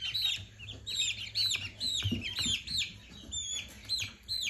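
A brood of young lavender Orpington and Rhode Island Red chicks peeping: many short, high chirps, several a second, overlapping throughout, over a faint steady low hum.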